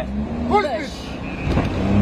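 Car engine running, heard from inside the cabin as the car climbs a ferry's steel loading ramp, getting louder in the last half second. A man's shout cuts in about half a second in.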